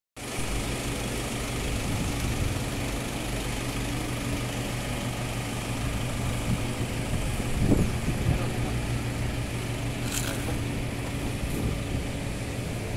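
Motor vehicle engine idling steadily, a low even hum, with a brief louder knock just before eight seconds in.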